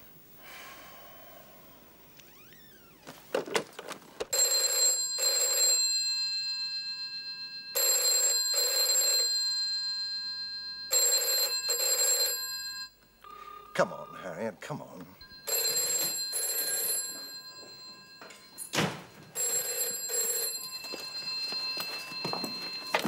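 Electromechanical telephone bell of a black dial telephone ringing the British double ring, brr-brr, five pairs about three and a half seconds apart, unanswered.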